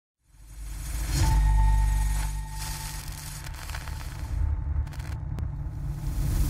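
Logo-reveal intro sound effect: a deep rumble swells up in the first second and a half, with a thin held tone over it, then a few sharp crackles near the end.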